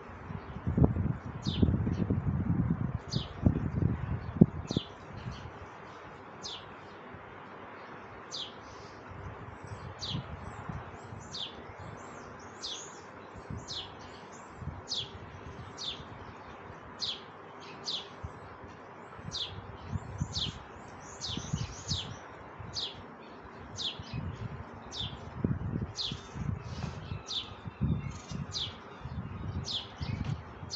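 A small bird chirping over and over, short high chirps about once a second. Low rumbling thumps are loudest in the first few seconds and come again near the end.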